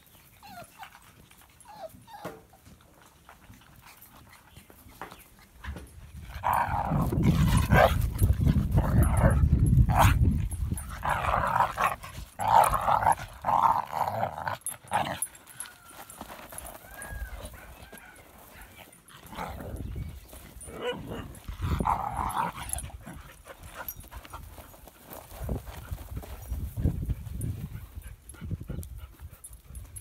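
Dogs playing together, with bursts of short yaps and growls that cluster about a third of the way in and again about two-thirds through. A loud low rumble lasts several seconds about a quarter of the way in.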